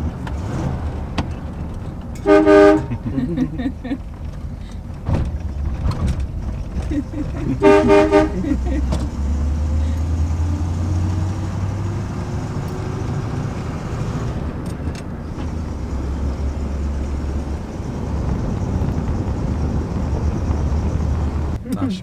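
The 1956 Buick Special's 322 cubic-inch Nailhead V8 running on the move, a low rumble heard from inside the cabin. Two short car-horn toots sound, about two seconds and about eight seconds in.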